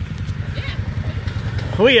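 An off-road vehicle's engine idling steadily, a low, even pulsing rumble; a woman starts speaking near the end.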